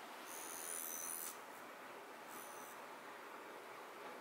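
Faint high metallic ringing from a gold weighted tuning fork held beside the ear, lasting about a second near the start and returning briefly after the middle.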